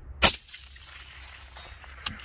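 A single suppressed rifle shot about a quarter second in, followed by an echoing tail that fades over about a second.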